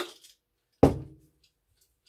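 A single sharp knock of something hard against a hard surface, about a second in, ringing briefly as it fades.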